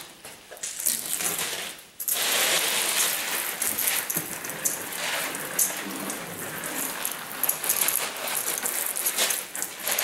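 Rinse water sprayed at light pressure onto the engine bay and its plastic sheeting, a steady spattering hiss that breaks off for a moment about two seconds in. It is rinsing soapy water, dirt and debris off the engine bay.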